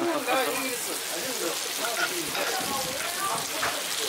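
Beef intestines and thin-sliced brisket sizzling on a hot pan as tongs toss them, a steady frying hiss with voices talking over it.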